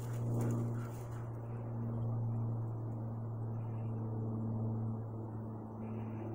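A steady low hum runs throughout, with rustling noise during about the first second.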